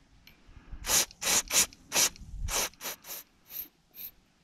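A spark plug being scrubbed clean by hand, about nine quick scraping strokes in a loose rhythm.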